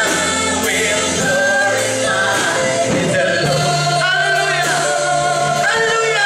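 Gospel worship song: voices singing long held notes over instrumental backing with a sustained low bass line that shifts note every second or two.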